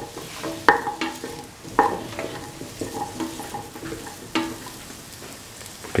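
Potato and carrot pieces sizzling as they sauté in oil in a metal pot, stirred with a spatula. The spatula scrapes and clinks against the pot, with three sharper knocks that ring briefly: one just under a second in, one about two seconds in, and one past four seconds.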